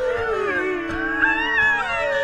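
A person howling through cupped hands, the voice gliding up and falling back in long arcs, over music.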